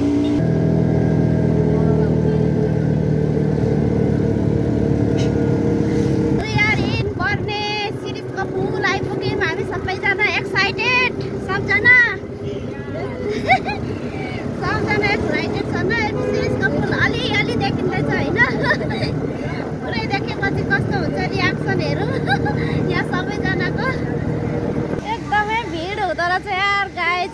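Auto-rickshaw engine running steadily. From about six seconds in, passengers' voices talk and laugh over it.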